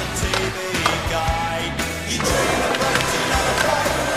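Skateboard on a wooden bench and concrete floor: sharp board knocks about one and two seconds in, with wheels rolling, heard under a music soundtrack with a steady bass beat.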